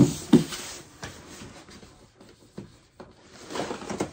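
Small cardboard boxes and yarn being handled and set down on a tabletop: two sharp knocks at the start, then rustling and light knocks, with a denser run of bumps near the end.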